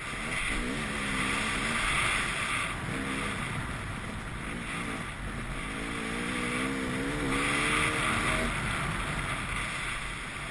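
Off-road motorcycle engine revving, its pitch rising and falling in several spells as the rider opens and closes the throttle on a dirt track, picked up by a helmet-mounted camera.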